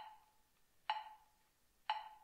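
Metronome ticking at about one beat a second, three sharp clicks each with a short ring, keeping time while the trumpet rests.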